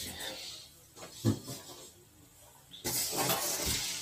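Hands handling a stainless steel stockpot in its cardboard box: a short knock about a second in, then a steady rustling scrape of cardboard and paper packaging from near three seconds as the pot is taken hold of.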